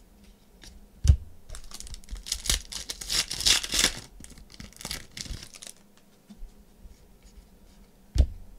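Foil trading-card pack being torn open and crinkled, loudest about two to four seconds in. A single thump comes about a second in.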